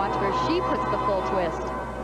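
Gymnastics TV broadcast audio: a commentator's voice over arena background, with faint floor music.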